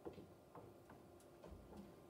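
Near silence in a large hall, with faint, irregular clicks and light knocks about every third of a second to half second.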